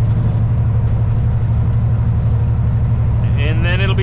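Diesel engine of a semi-truck heard from inside the cab, running with a steady low drone at highway speed while pulling a heavy trailer load. A man's voice starts near the end.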